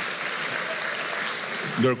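An audience in a hall applauding, a steady even clapping that holds until a voice comes in near the end.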